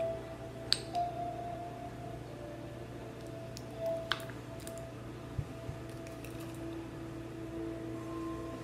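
A few faint, scattered clicks and taps from a small makeup container of glitter being handled, over a steady low electrical hum.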